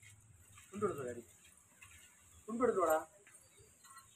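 Two short vocal calls, each about half a second long and a little under two seconds apart, over a faint steady high-pitched hiss.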